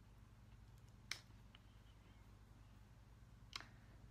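Near silence: quiet room tone with a low steady hum, broken by two faint short clicks, about a second in and near the end.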